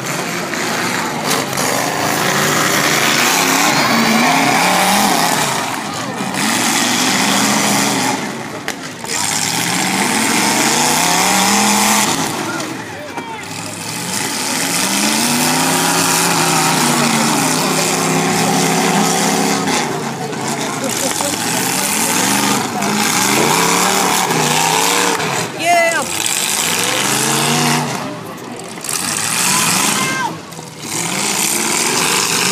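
Demolition derby car engines revving up and falling back again and again over a steady din of crowd noise.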